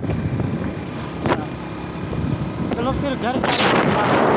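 Riding noise from a moving motorcycle: engine and wind rushing over the microphone. It is quieter at first, with a sharp knock about a second in, and the wind noise swells loud near the end.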